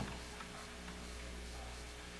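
Steady low hum and faint hiss of a live concert recording as the applause dies away, with a faint last clap or two.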